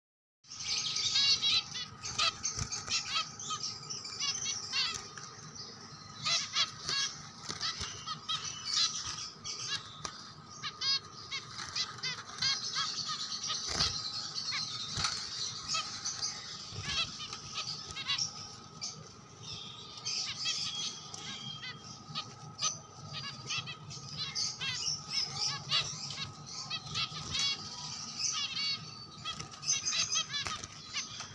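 A group of caged Java sparrows (white Java finches) chirping with many short, high calls that overlap almost without a break, starting abruptly about half a second in.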